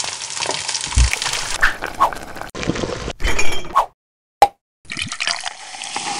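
Quick-cut kitchen sounds: food sizzling in a wok, with a low knock about a second in, then, after a short gap, liquid being poured into a drinking glass near the end.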